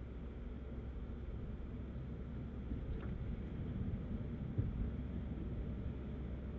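Mini Cooper S 2.0-litre turbo engine and road noise heard from inside the cabin, a steady low hum, with a short knock about four and a half seconds in.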